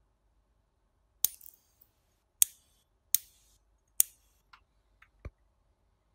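Sparks snapping across the output wires of a small kit-built high-voltage arc generator (a transistor oscillator driving a 10–15 kV step-up transformer): four sharp snaps about a second apart, each trailing off in a brief crackle, then a few fainter clicks near the end.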